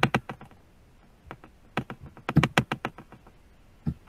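Computer keyboard keys being pressed: sharp clicks in quick little groups, the busiest run of about eight in under a second past the halfway point.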